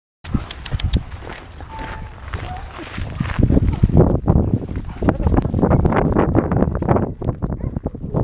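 Footsteps of people and several dogs crunching on a gravel path, a busy run of irregular crunches that grows louder and denser from about three and a half seconds in.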